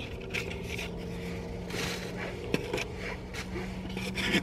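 Cardboard box and paper insert scraping and rustling as they are handled, with one small click about two and a half seconds in, over a steady low hum.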